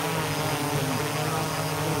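DJI Matrice 4T quadcopter hovering close by on low-noise propellers: the steady, even buzzing hum of its four rotors.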